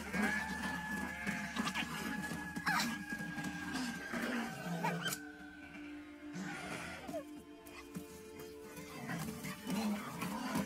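Film score music: one long held high note for about the first five seconds over lower sustained tones, with a couple of sharp hits about three and five seconds in.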